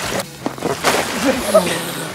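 Pool water splashing as a person flops belly-first onto a duct-tape bridge lying on the water, loudest about a second in, then sloshing.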